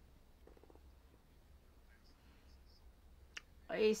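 Quiet pause with a faint low hum and a single sharp click about three and a half seconds in, then a voice starts speaking French near the end.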